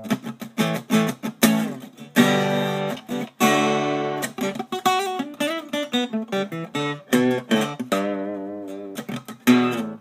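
Auditorium-size acoustic guitar being played: quick picked notes mixed with strummed chords, and a chord left ringing near the end. It plays clean, with no fret buzz.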